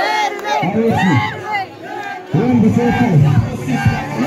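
A crowd of young men shouting together, many voices overlapping. A little over two seconds in, a louder, deeper layer of sound joins.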